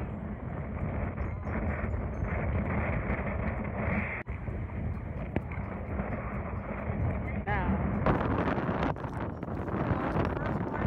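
Wind buffeting the microphone in a steady rushing noise, with people talking faintly in the background and a brief voice about seven and a half seconds in.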